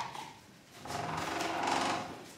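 A door hinge creaking for about a second, starting a little under a second in, after a short knock at the very start.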